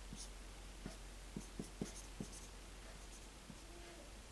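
Marker writing on a whiteboard: faint squeaks and quick taps of the felt tip as strokes are drawn, bunched between about one and two and a half seconds in.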